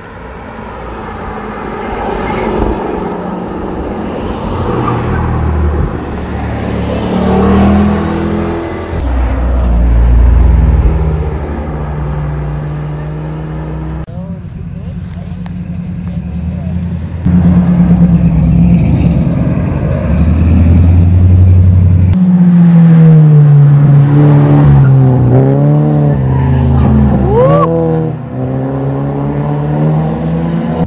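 Several sports cars, one after another, accelerating and passing through tight corners, their engines revving. Near the end the engine pitch rises and falls several times in quick succession.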